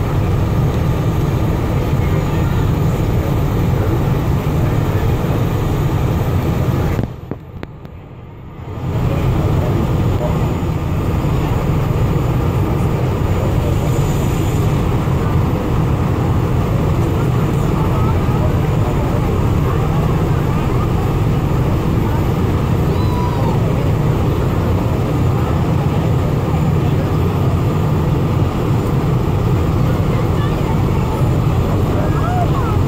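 Distant rocket rumble from the Atlas V carrying the GOES-R satellite as it climbs away: a steady low rumble with a hiss above it, which drops away for about two seconds near a third of the way in and then returns.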